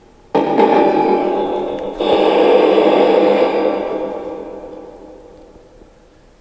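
Electronic ghost-box device sounding through its speaker: a sudden swell of harsh, echoing noise about a third of a second in, a second surge at two seconds, then a slow fade over the last few seconds.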